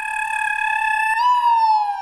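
A high, whistle-like tone held steady for about a second, then rising slightly and sliding down in pitch.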